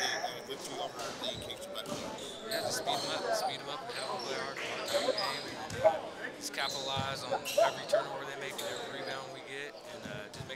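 Basketballs bouncing on a gym floor, many irregular sharp knocks with the loudest about six seconds in, over the echo of indistinct chatter in a large gym.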